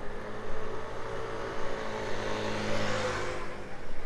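A motor vehicle's engine hum holds steady, then swells as the vehicle passes close by about three seconds in and fades away, over city street traffic.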